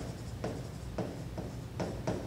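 Stylus writing a word on an interactive whiteboard screen: a run of short scratchy pen strokes, about two a second.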